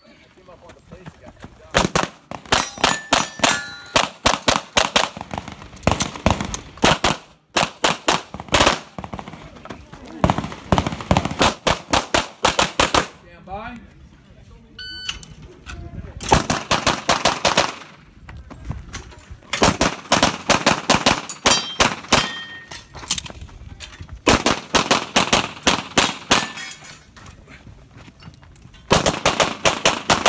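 Rapid strings of pistol shots fired in quick bursts, several bursts with short gaps between them. About halfway through the shooting stops, a shot timer gives a short electronic start beep, and fast strings of shots resume.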